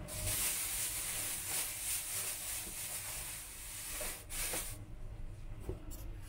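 A thin plastic bag of salad greens rustling and crinkling as it is handled, a steady hiss for about four seconds, then a short burst before it goes quieter.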